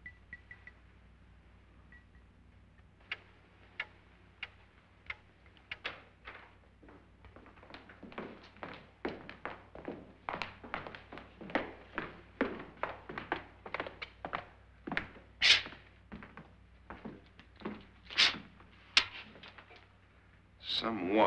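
Footsteps on a hard floor: a few scattered steps at first, then a steady run of steps that grows louder, with a sharper knock or two near the end, as from a door.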